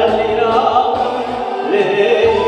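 A man singing a Korean trot song into a microphone over a recorded backing track.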